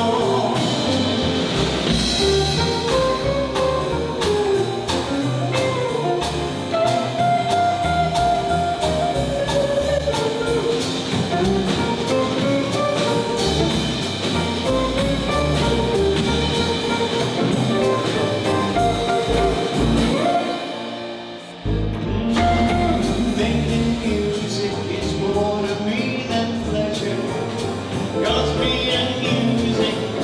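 Live jazz combo playing an instrumental break, with archtop electric guitar, upright bass and drum kit. About 21 seconds in the band briefly drops away, then comes back in.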